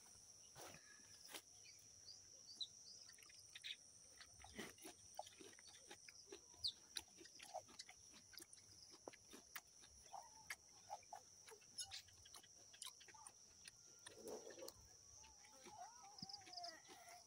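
Close-up chewing of crunchy fried grasshoppers (nsenene): faint, irregular crisp crunches and mouth clicks as they are bitten and chewed. A steady high-pitched hum runs underneath.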